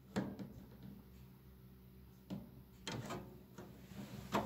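A few faint clicks from the controls of a caravan gas space heater as it is switched on: one right at the start and two more about two and a half to three seconds in, over a low steady hum.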